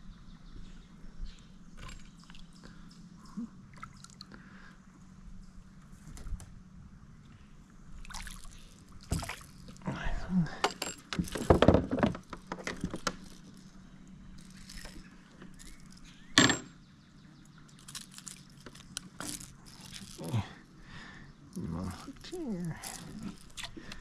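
Handling noises in a plastic kayak while a small bass is landed: scattered clicks and knocks on the hull and tackle with small water splashes, loudest in a burst about ten to thirteen seconds in and a sharp click about sixteen seconds in.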